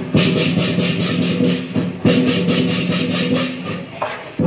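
Lion dance percussion: rapid metallic cymbal clashes, about five a second, over drumming, with a steady low ringing tone underneath. The playing eases briefly near the end.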